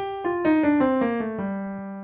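Piano playing a descending scale of single notes, about three a second, stepping down to a low note: the G natural minor scale with F natural.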